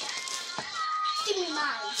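A young child's voice: a held high call, then a short burst of chatter.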